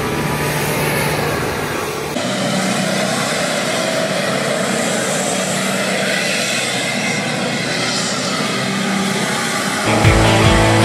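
Mitsubishi Pajero SUVs driving off-road through mud, engine running steadily. About two seconds in the sound cuts abruptly to another vehicle, steadier and with less bass.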